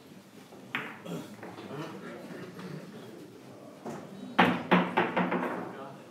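Billiard balls clacking: a quick run of five or six sharp knocks in about a second, with a single click a little earlier and low voices murmuring around it.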